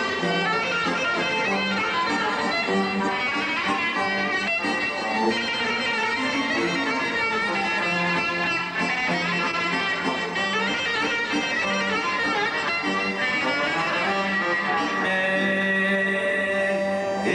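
A live Greek folk band playing an instrumental passage: a clarinet carrying the melody over keyboard and a plucked string instrument, with a steady beat throughout.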